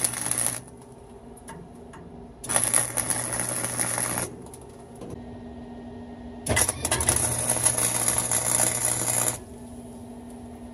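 Wire-feed welder laying tack welds on the steel of a truck cab roof: three bursts of crackling arc, the first ending about half a second in, then one of about two seconds and one of about three seconds near the end. A low hum carries on between the welds.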